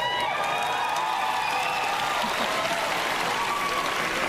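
Large auditorium audience applauding, with cheering voices rising and falling over the clapping.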